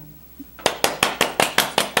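Two people clapping their hands, starting about half a second in and going on at several claps a second.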